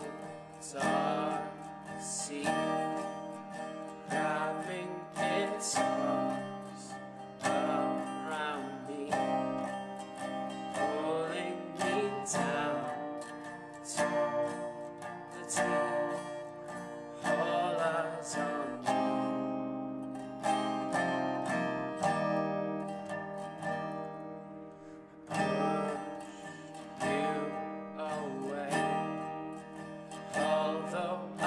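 A resonator guitar strummed in steady rhythm, with a man singing over it at times.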